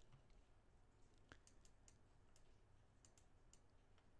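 Near silence: faint room tone with a few scattered, faint clicks.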